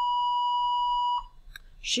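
A single steady electronic beep, one high tone that cuts off suddenly just over a second in.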